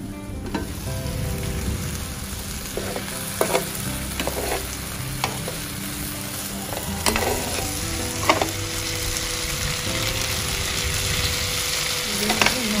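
Chicken and beef strips sizzling in a Dessini double-sided grill pan. The meat is stirred with metal spoons that clink sharply against the pan a few times.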